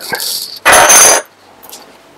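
A brief metallic clatter, about half a second long, with a thin high ring: metal rifle parts and a small hand tool knocking together as they are handled.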